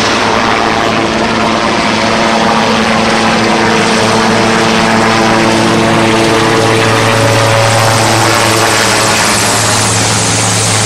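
Large military helicopter flying low overhead: a steady rotor and turbine sound with a deep even hum, growing slightly louder past the middle.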